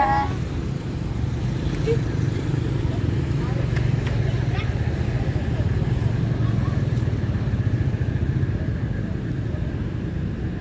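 Steady low rumble of outdoor city background noise, with no single event standing out.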